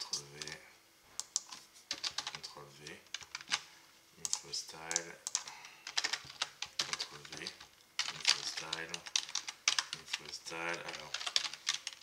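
Computer keyboard typing: quick, irregular bursts of key clicks with short pauses between them.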